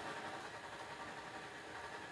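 Faint, steady room noise: an even low hiss and hum with no distinct events.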